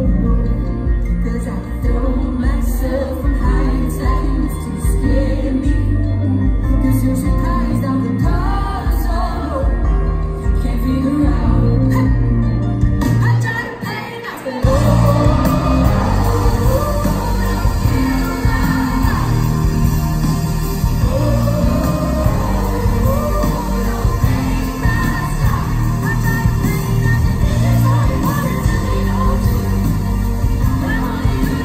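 Live pop band with a woman singing, heard from within the audience. About halfway through, the music thins out briefly, then the full band comes back in louder.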